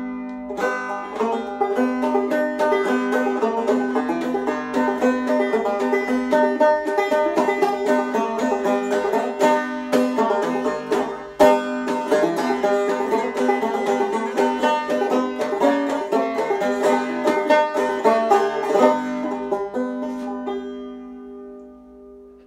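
Newly finished five-string banjo played clawhammer style: a steady stream of plucked notes over a ringing drone string, ending on a chord that rings out and fades near the end.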